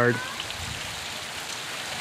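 A steady, even hiss of outdoor background noise with no distinct events.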